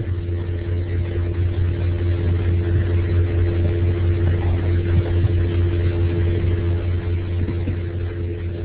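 A fairly loud, steady low hum, with fainter steady higher tones above it, carried over a web-conference audio line.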